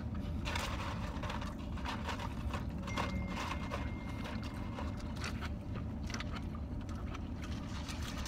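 Small close-up eating sounds, including chewing, sipping a milkshake through a straw, and rustling of paper food wrappers, made up of many short clicks and rustles. Under them runs the steady low rumble of a car cabin.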